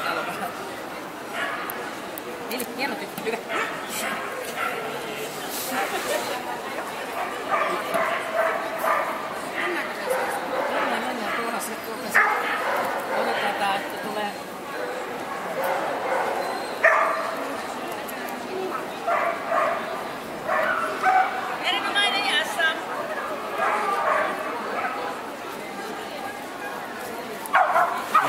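Dogs barking and yipping over the continuous chatter of a crowd, with a few sharper yelps standing out now and then.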